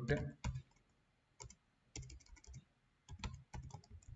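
Typing on a computer keyboard: short bursts of keystrokes with brief pauses between them.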